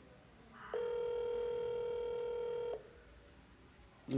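Ringback tone of an outgoing phone call, heard through a smartphone's loudspeaker while the call is dialing: one steady buzzy tone lasting about two seconds, starting under a second in.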